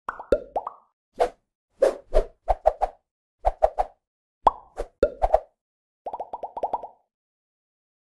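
Cartoon pop sound effects for an animated intro: an irregular string of short plops, several dropping quickly in pitch, ending in a rapid run of about ten pops.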